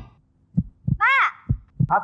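Heartbeat sound effect: short low thumps in pairs over a faint steady hum. It is the suspense cue during the countdown to the button-press decision. A short call from a voice comes about a second in.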